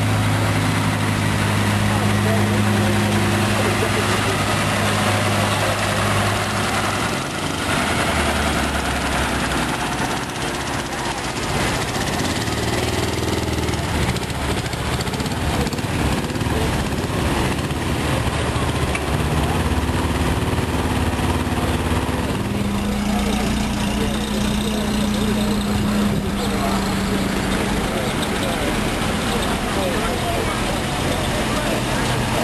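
Engines of vintage military vehicles running as they drive slowly past one after another, a steady engine hum whose pitch changes as each new vehicle comes by.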